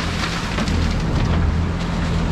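Ice cubes pouring and rattling out of a bag into a boat's in-floor fish tank to make a salt-water ice slurry, over the steady hum of an outboard motor and the rush of water with the boat under way.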